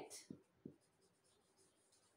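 Faint sound of a marker pen writing on a whiteboard, with two short soft taps in the first second.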